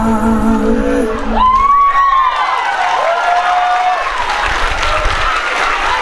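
Dance music ending about a second in, followed by an audience clapping and cheering, with two long high calls rising out of the crowd.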